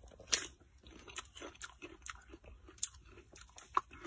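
Biting into a piece of ripe, green-rinded melon and chewing the crisp flesh: a sharp crunch right at the start, then a run of small crunches as it is chewed, with another sharp crunch near the end.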